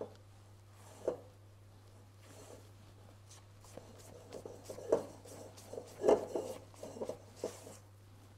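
Spatula folding almond powder and icing sugar into meringue in a stainless steel bowl for a dacquoise batter: soft, irregular scrapes and taps against the bowl, more frequent in the second half.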